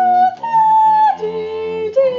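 A voice singing held notes in a yodel-like style. One high note steps higher about half a second in, then drops to a lower note just after a second.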